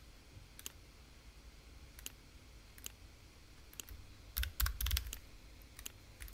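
Quiet computer mouse clicks: a few single clicks spaced a second or so apart, then a quick cluster of louder clicks about four and a half seconds in.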